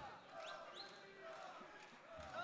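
Faint voices shouting from around the cage in a large hall, scattered and overlapping, with two short high-pitched rising calls about half a second in.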